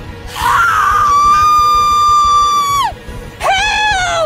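A woman's long, high-pitched scream held on one pitch for about two seconds and falling away at the end, followed by a second, shorter scream, over background music.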